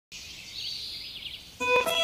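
Small birds chirping in high, quick wavering calls; about one and a half seconds in, music enters with held instrument notes and grows louder.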